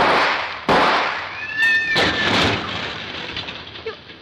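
Radio-drama sound effects: two revolver shots less than a second apart, then a high screech of skidding tyres and a noisy crash that fades away.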